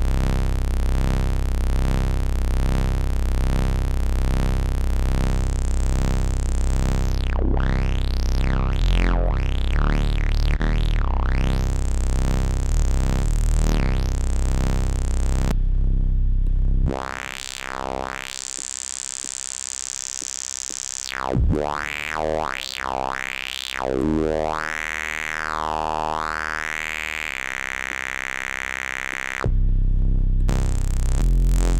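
Oscillot modular software synth patch playing a bass line of bright, buzzy sustained notes, its tone sweeping up and down as the filter is moved. About 17 s in the low end drops away and the sound turns thinner and quieter, still sweeping.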